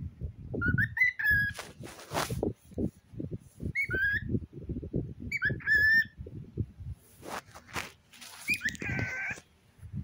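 Cockatiel giving short whistled chirps in four bursts, over a steady scatter of low thumps and rustling from handling.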